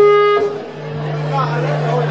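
Live band's stage rig between songs: a held, amplified instrument note fades out in the first half second, over a low steady amplifier hum, with crowd chatter underneath.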